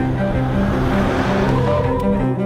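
A car rushing past: a swell of engine and tyre noise that builds to a peak around the middle and fades out, over music with low bowed strings.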